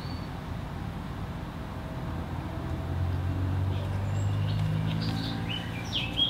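A low engine hum that grows louder from about three seconds in, with a few faint bird chirps over it.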